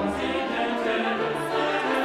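Classical choral music: a choir singing sustained, held notes, with a low bass note dropping out about half a second in.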